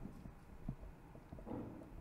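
Marker pen writing on a whiteboard: a few faint, separate taps and a short scratchy stroke as the pen moves.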